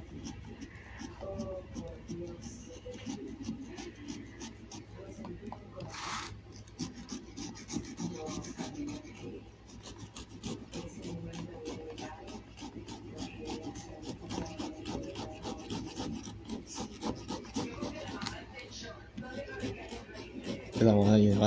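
A knife sawing through the bottom of a large pumpkin, the blade cutting the rind in quick, repeated back-and-forth strokes, with one louder stroke about six seconds in.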